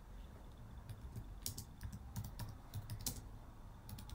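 Typing on a computer keyboard: a run of quiet, irregularly spaced key clicks.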